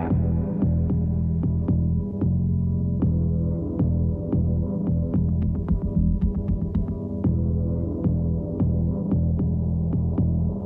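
Low, droning suspense music bed that pulses like a heartbeat, with a steady run of sharp ticks about three a second over it.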